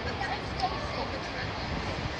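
Outdoor crowd ambience: indistinct voices of people talking nearby over a steady low rumble of background noise, with no single event standing out.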